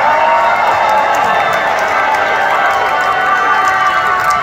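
Large concert crowd cheering and screaming, loud and steady.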